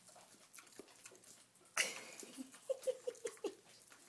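Potbellied pig vocalizing: a sudden loud sound just before two seconds in, then a quick run of about five short grunts.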